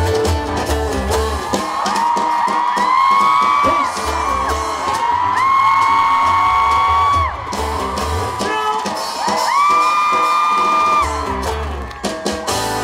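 Live band playing, with bass guitar, acoustic guitar and drums, and three long held sung notes over it, each swooping up into a steady pitch and lasting about two seconds.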